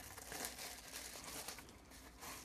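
Faint crinkling and rustling of a small mailing envelope being handled, with scattered light crackles.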